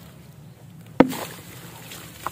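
A block of red dirt crushed between the hands and smashed into a basin of muddy water: one sharp crunching splash about a second in, with crumbs pattering into the water briefly after.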